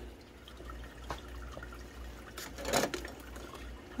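Water trickling and dripping in an AeroGarden Bounty's tank as its pump circulates the water, over a low steady hum. A brief louder rustle about two and a half seconds in.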